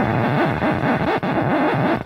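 Drum and bass track in a drumless breakdown: a noisy synthesizer texture whose pitch wavers and bends rapidly up and down.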